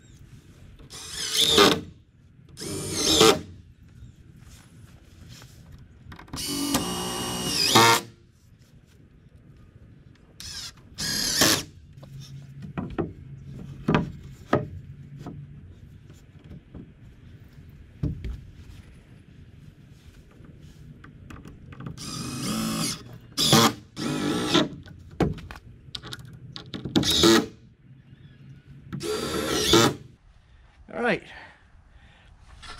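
Cordless drill driving screws into a wooden door brace in a series of short bursts, each a second or two long, with the longest run about six seconds in. Quieter knocks and handling noise come between the bursts.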